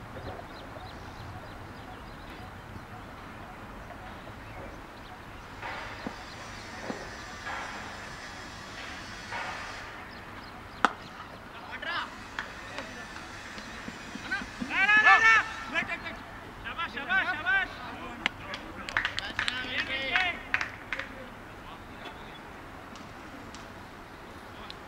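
Cricket bat striking the ball once with a single sharp crack about halfway through, followed by players shouting across the open ground while the batsmen run.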